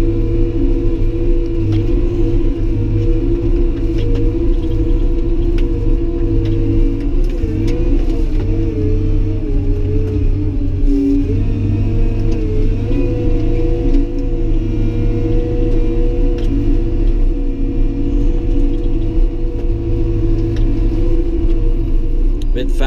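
Caterpillar D5 bulldozer's diesel engine running steadily under load as the machine travels, heard from inside the cab, with a strong low rumble. The engine note shifts in pitch a few times around the middle.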